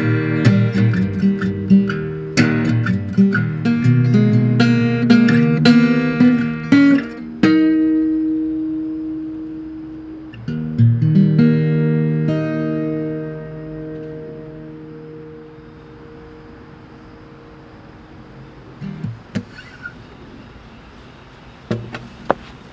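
Solo acoustic guitar strummed for several seconds, then the last chords are let ring and fade out about two-thirds of the way in, leaving quiet with a few faint knocks near the end.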